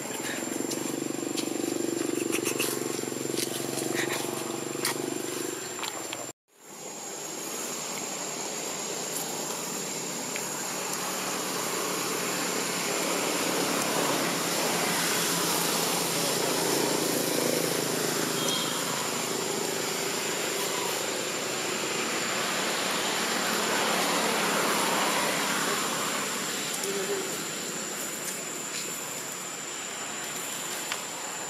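Outdoor ambience: a steady, high-pitched insect drone over a hiss, with faint background voices. The sound cuts out for a moment about six seconds in.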